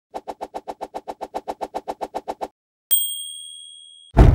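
Logo-animation sound effect: a quick run of even ticks, about seven a second, as the text writes itself on, then a single bright bell ding about three seconds in that rings out slowly.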